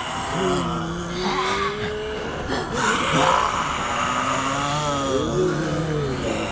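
Eerie suspense soundscape: drawn-out moaning tones that hold, then glide and waver in pitch, over a rough steady rumble.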